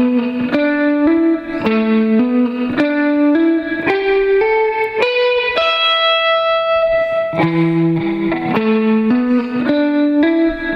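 Electric guitar playing an E minor pentatonic lick: the 12th-fret notes are picked and the others hammered on with the fretting fingers. A run of quick separate notes leads to one note held for about two seconds just past the middle, then the run starts again.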